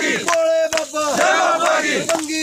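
A crowd of men chanting a short devotional call in unison, repeated over and over.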